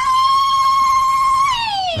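A baby crying: one long, high wail that rises, holds steady for about a second and a half, then falls away.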